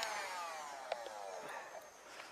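Electric heat gun switched off, its fan motor winding down in a falling whine over about a second and a half, with a few faint clicks near the end.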